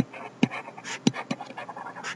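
Pen stylus tapping and scratching on a tablet while handwriting: a string of light, sharp taps several times a second, with short scratchy strokes between them.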